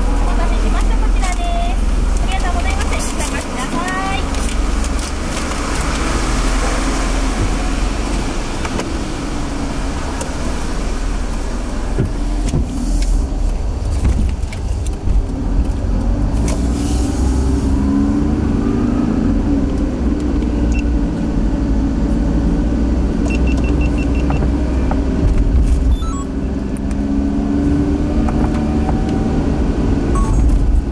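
A car driving on a rain-wet road, heard from inside: a steady engine and road rumble with passing swishes of tyre spray. In the second half the engine note rises as the car pulls away and gathers speed.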